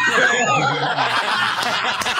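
Several men laughing loudly together at a joke, overlapping cackles and chuckles.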